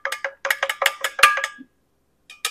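A plastic bubble-remover stick clinking against the glass canning jar and the metal funnel as it is stirred through the tomato sauce to free trapped air bubbles. It makes a rapid run of about a dozen ringing taps that stops shortly before the end.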